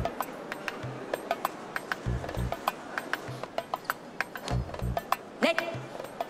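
Background music: a light comic cue of quick clicking percussion over paired low thumps that come about every two and a half seconds.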